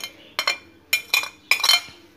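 A metal spoon clinking against glass dishes as spices are scraped off a glass plate into a glass bowl: a quick, uneven series of about seven sharp clinks, each with a short ring.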